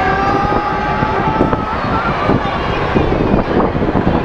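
Loud, steady mechanical noise of a spinning amusement ride with scattered knocks, and a steady high tone through the first second and a half.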